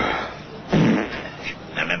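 A man breaking wind loudly: a pitched fart tails off at the start, then a louder, rougher blast follows a little under a second in.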